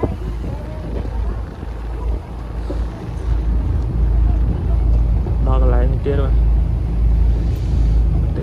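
Sightseeing boat's engine running with a steady low rumble. A person's voice is heard briefly a little past the middle.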